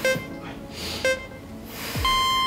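Soft background music with two short electronic beeps, one at the start and one about a second in, counting down the seconds of an exercise timer.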